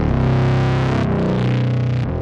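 Background music: distorted electric guitar with effects holding sustained notes, the sound shifting about halfway through.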